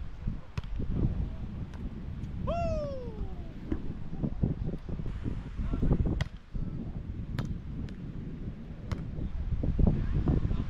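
Volleyball struck by hands several times in a beach volleyball rally, each contact a sharp slap, over a steady low rumble. About two and a half seconds in, a single pitched call of about a second rises briefly, then slides down in pitch.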